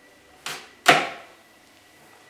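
Two knocks of wood on wood as the parts of a folding wooden step stool are moved: a light knock about half a second in, then a louder, sharper clack just before the middle.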